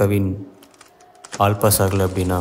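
A man speaking, broken by a short pause filled with a quick run of light clicks and taps from papers and a ring binder being handled on a desk.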